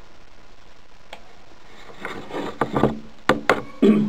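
Handling noise of a mini-USB cable being plugged into the port on the side of a Nikon DSLR: rustling from about two seconds in, then two sharp clicks close together.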